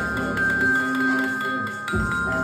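Glockenspiel bars struck with mallets, their high notes ringing on, playing a melody over a hip-hop track with a deep bass that pulses in and out.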